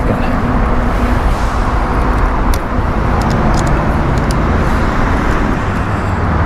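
Steady low outdoor rumble with no voice, and a few faint clicks in the middle.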